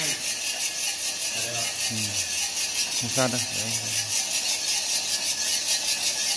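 Small motor-driven drum coffee roaster turning over a butane camping-stove burner: a steady hiss with a fast, regular mechanical rattle from the rotating drum and its drive.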